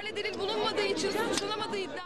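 Speech: people talking, with chatter among several voices.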